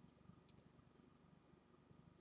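Near silence: room tone in a pause between sentences, with one faint, brief click about half a second in.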